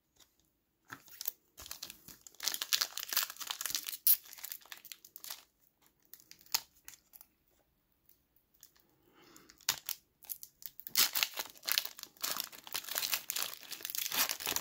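Foil trading-card pack wrapper crinkling and tearing as it is handled and opened, in irregular bursts with a lull in the middle, then dense and continuous over the last few seconds.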